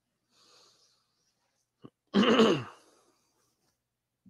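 A person clears their throat once, a short loud sound about halfway through whose pitch falls. A faint breath and a small click come before it.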